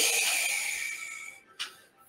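A man's long breath out through the mouth, close to the microphone, fading away over about a second and a half. A short, faint puff of breath follows.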